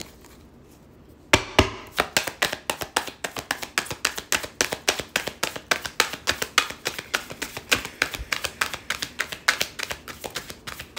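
A deck of tarot cards being hand-shuffled. The cards slap against each other in a rapid run of soft clicks, several a second, starting about a second in.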